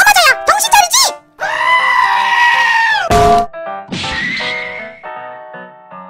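A shouted cartoon voice, then a long held scream, cut short about three seconds in by a single frying-pan strike with a brief ring. A hissing, rising after-effect follows, over soft background music.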